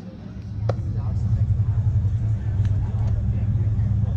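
A loud low rumble sets in about half a second in and runs on steadily. Near its onset comes a single sharp pop: the pitched baseball smacking into the catcher's mitt.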